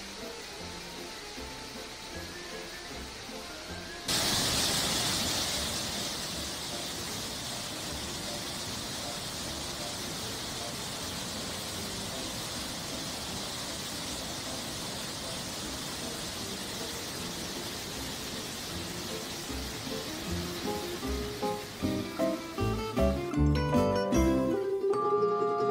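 Soft background music, then about four seconds in a sudden cut to loud, steady rushing water: a Canal du Midi lock filling, with water pouring in through the opened sluices and churning around a boat in the chamber. The rushing gives way near the end to plucked-string music.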